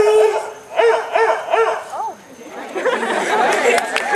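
A group of voices giving a rhythmic, bark-like Greek-organization call: a held note, then short rising-and-falling shouts about three a second. Mixed crowd noise follows for the last couple of seconds.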